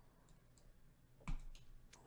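Faint room tone, broken by a single sharp click with a low knock a little past halfway, which dies away within about half a second.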